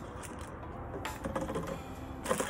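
Small plastic paint containers being handled on a tabletop: a few light clicks and taps, growing into a quick cluster of clicks about a second in.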